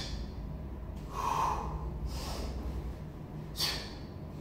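Forceful breathing of a kettlebell lifter under exertion: short, sharp breaths, a heavier one about a second in and a quick hissing one near the end.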